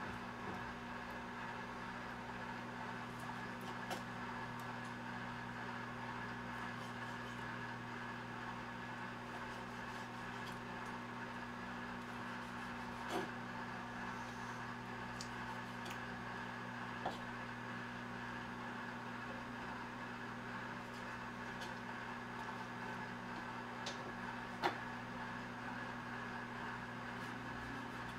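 A microwave oven running with a steady hum throughout. A few light knocks of a kitchen knife on a plastic cutting board as squid is cut, the sharpest near the end.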